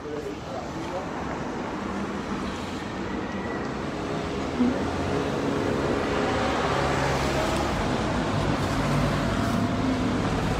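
A motor vehicle's engine running in the street, growing steadily louder as it approaches.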